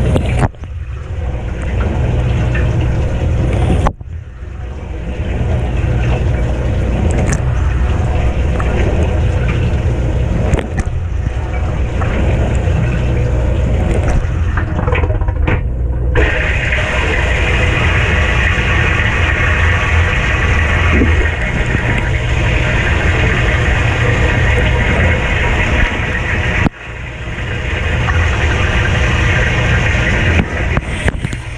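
Kenmore dishwasher's wash pump running with water spraying from the bottom wash arm, heard from inside the tub. About sixteen seconds in, the spray switches to the top wash arm and the sound turns brighter, with more high hiss. There are brief dips in level near the start, about four seconds in, and near the end.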